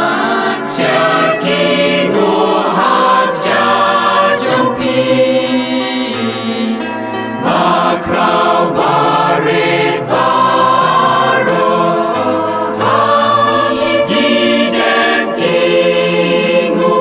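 Choral music: a choir singing in a chant-like style, several voices holding notes together and moving from note to note every second or so.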